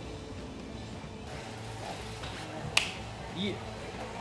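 A single sharp click about three-quarters of the way in, followed by a brief short tone, over quiet background music.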